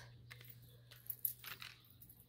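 Faint light clicks and rustling from small Disney pins on their cardboard backer cards and their packaging being handled and set down, a few scattered clicks.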